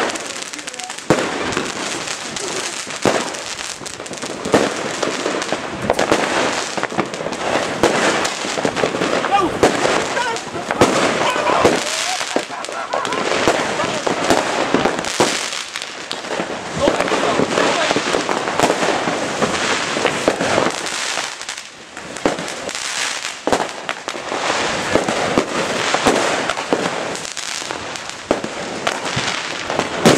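Fireworks and firecrackers going off without a pause: a dense string of sharp bangs and crackling pops that overlap one another.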